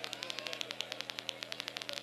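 Faint electrical static in the recording: a rapid, even ticking of about ten ticks a second over a low hum.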